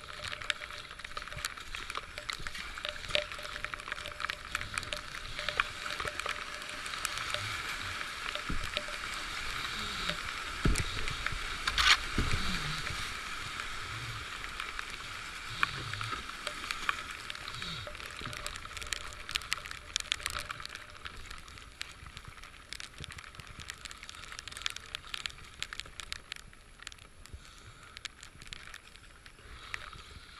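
Whitewater kayak running a rapid: rushing, churning water with paddle strokes splashing and many small knocks, loudest with a few heavy thumps about ten to twelve seconds in, then easing off.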